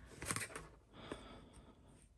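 Faint handling sounds of a clear acrylic ruler being slid and laid across cotton fabric on a cutting mat: a short rustle about a third of a second in and a softer one about a second in.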